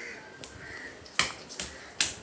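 A couple of sharp clicks a little over a second in, the loudest sounds here, with a faint short chirp from a pet bird just before them.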